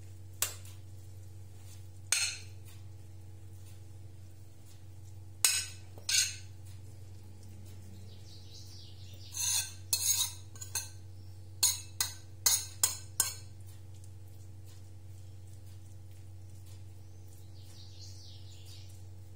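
Sharp clinks of a metal utensil against a ceramic plate and the metal ring mould as grated cucumber is scraped off onto the salad. Single clinks come a few seconds apart at first, then a quicker run of them past the middle, over a steady low hum.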